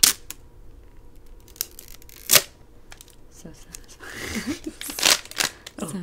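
Clear plastic rod handled close to the microphone, giving a few sharp, loud clacks: one at the start, one about two seconds in, and a cluster around five seconds in. A short burst of laughter comes about four seconds in.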